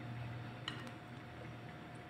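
Faint squelching of a silicone spatula folding thick mascarpone pastry cream in a glass bowl, with a light click against the glass a little under a second in.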